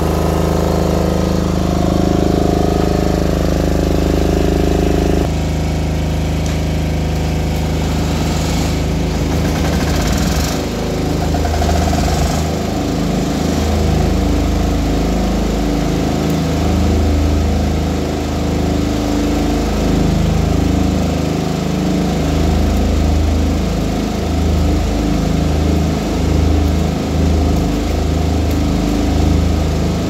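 Air-cooled diesel generator sets (Tsuzumi TDG11000SDV, 10 kVA silent type) running on a test run. The drone is steady at first, then from about ten seconds in turns uneven and beating.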